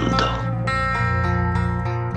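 Instrumental gap in an amateur acoustic rock song, led by acoustic guitar: a new chord comes in about half a second in and rings on steadily.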